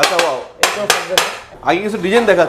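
A thin metal rod tapping on glazed ceramic floor tiles: four sharp, clinking taps in quick succession during the first second and a bit.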